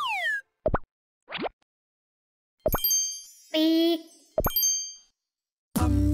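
Cartoon sound effects in a break in a children's song: a short falling whistle, two quick pops, a ding with bell-like ringing, a brief pitched vocal sound, and another ding. The song starts again near the end.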